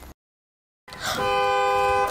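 Car horn giving one steady honk of about a second, on two close pitches, starting about a second in after a brief stretch of dead silence.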